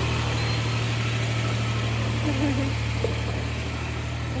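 A steady low machine hum, like a motor running, holding at an even level throughout.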